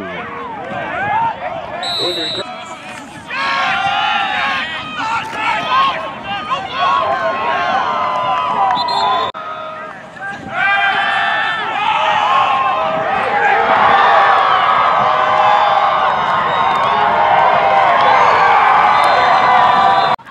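Many voices shouting and cheering at a football game, with no single clear speaker. The sound grows louder and denser over the last several seconds, then cuts off abruptly.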